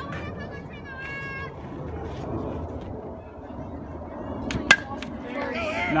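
A bat strikes a pitched baseball with one sharp crack near the end, over a murmur of spectators' voices. A high-pitched held shout comes about a second in, and shouting starts right after the hit.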